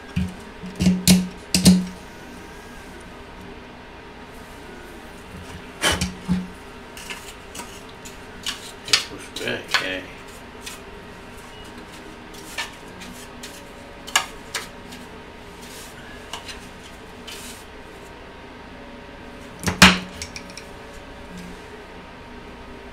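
Scattered clicks and knocks of hard plastic being handled and set down on a desk: 3D-printed model trees and a snap-off utility knife. The loudest knock comes near the end, over a steady low hum in the room.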